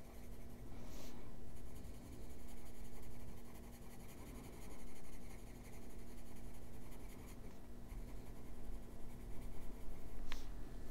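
Colored pencil shading on a coloring-book page: the lead rubbing across the paper in repeated strokes that swell and fade about once a second.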